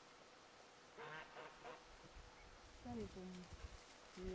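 Mostly near silence, broken by a few faint quacking calls of herded ducks, a short cluster about a second in and another near three seconds.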